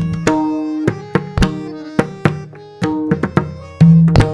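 Pakhawaj played solo: separate strokes at a measured, uneven pace, sharp ringing strokes on the treble head over deep, sustained strokes on the bass head.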